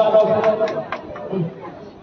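A man's voice through a microphone and PA trailing off in the first second, then the low chatter of a large crowd with a few faint clicks.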